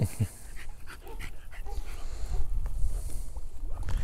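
An American bully puppy lapping and splashing at pond water with her muzzle, giving a run of short irregular wet sounds.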